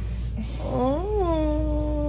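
A person's drawn-out whining voice: one long held note that starts about half a second in, bends up and back down near the one-second mark, then holds steady.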